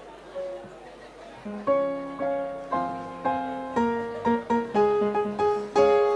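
Electric keyboard on a piano sound playing hymn chords, starting about a second and a half in after a faint room murmur, with chords struck about twice a second and each note dying away.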